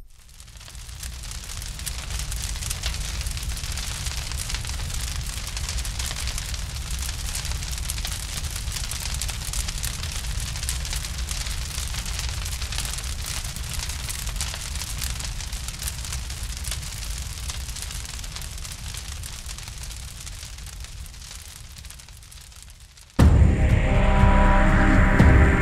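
A steady fire sound effect, deep rumble with hiss, fading in over the first two seconds and slowly tapering. Loud music cuts in about a second before the end.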